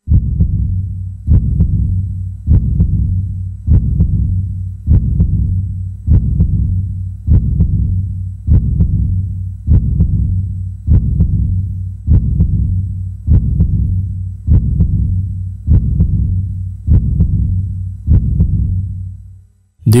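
Heartbeat sound effect: deep single thumps repeating steadily about every 1.2 seconds, each dying away quickly, fading out near the end.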